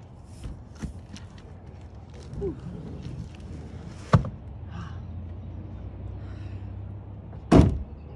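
A car trunk lid slams shut near the end, the loudest sound, after light knocks and a sharp knock about halfway through as heavy boxes are handled in the trunk.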